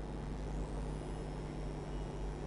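Steady low background hum and rumble, with no distinct events.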